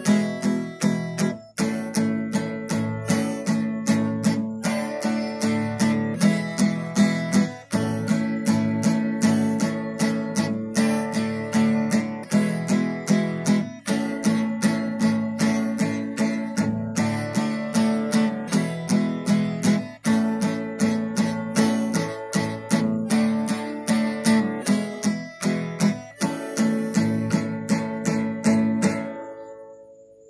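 Acoustic guitar strummed in a steady rhythm with no singing; the playing stops shortly before the end and the last chord rings out.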